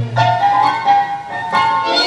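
Recorded Argentine tango music played over hall loudspeakers for the dancers, a melody line moving through held notes.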